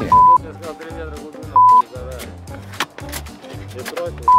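Two loud, steady, high censor bleeps, each about a quarter second long, one near the start and one about a second and a half in. They cut over the diggers' overheard talk, with background music with a beat underneath.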